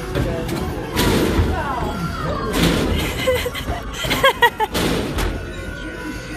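Indistinct voices over background music and the general hubbub of a busy arcade, with a few brief knocks.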